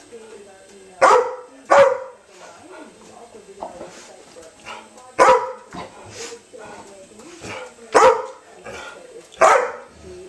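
A dog barking in play: five loud, sharp single barks at uneven intervals, with quieter sounds in between.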